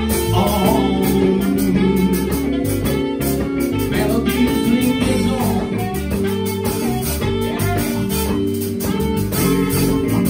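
Live jazz band playing an instrumental passage, with electric guitar prominent over bass, drums and keyboard.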